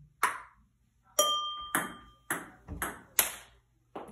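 Celluloid-type ping-pong ball clicking sharply off paddles and the table during a fast rally, about six hits in three seconds at an uneven pace.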